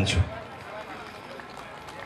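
A man's voice, speaking into a microphone, ends a phrase just after the start, then a pause filled only with faint, even outdoor background noise.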